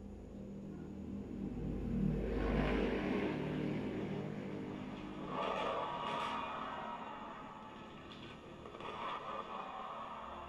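Stadium fireworks display heard through a television's speaker: a low rumble building about two seconds in, then swells of noise around the middle and again near the end.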